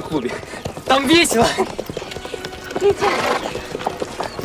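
A horse whinnying with a quavering call about a second in, with hooves clopping on a dirt track and voices mixed in.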